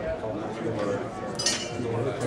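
Background chatter of voices, with one sharp, ringing clink about one and a half seconds in.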